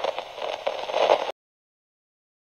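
TV-static transition sound effect: a crackling hiss that cuts off suddenly a little over a second in.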